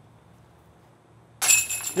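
A metal disc golf basket struck about one and a half seconds in: a sudden metallic clash with high ringing that carries on.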